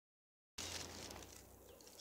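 Rustling and crunching of dry fallen leaves underfoot, with phone-microphone handling noise and a low hum, starting about half a second in and fading over the next second.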